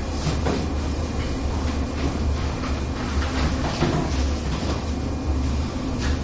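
A chalkboard eraser wiping across a blackboard in repeated strokes, over a steady low hum.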